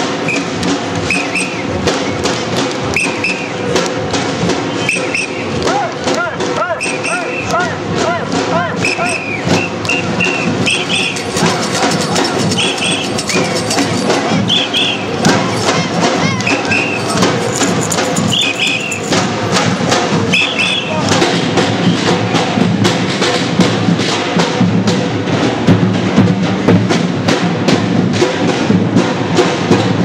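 Demonstrators' drums beating a fast, dense rhythm over crowd voices, with short high whistle blasts, many in pairs, through the first two-thirds; the drumming grows louder in the last third.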